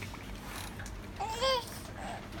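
A baby's short, high-pitched vocal squeal about one and a half seconds in, rising and then falling in pitch.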